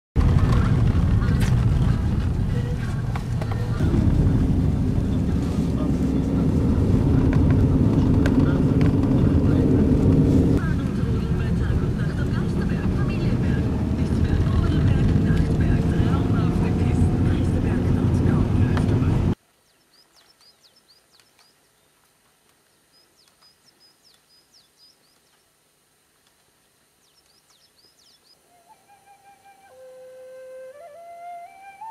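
Car driving: steady low engine and road noise with a slowly rising engine tone, cutting off abruptly about two-thirds of the way through. Then faint high chirps, and flute music begins near the end.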